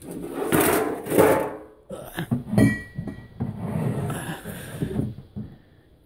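Rustling and knocking as a glass bottle of rum is fetched and handled, with a short ringing clink about two and a half seconds in.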